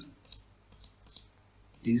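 Computer mouse clicking several times in quick succession, faint, while lines are being selected on screen.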